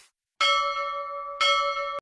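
A bell struck twice, about a second apart, each strike ringing on in clear steady tones; it is a bell-chime sound effect played with a notification-bell icon.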